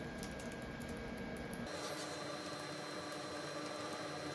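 Typing on a compact computer keyboard: a quick run of soft key clicks that thins out after about two seconds, over a faint steady hum.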